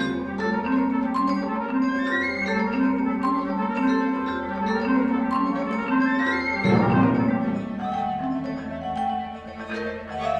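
Marimba and vibraphone playing quick runs of mallet notes with a string orchestra sustaining chords beneath them. A deep low accent enters about two-thirds of the way through.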